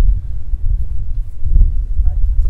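Low, uneven rumble of wind buffeting an outdoor microphone.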